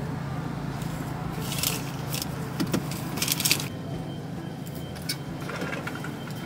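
Car idling with a steady low hum in the cabin, while short bursts of rustling and clinking come from fast-food bags and drink cups being handled, the longest a little past halfway.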